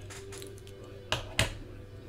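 Two sharp clicks about a third of a second apart, with faint rustling just before them, over a steady low hum.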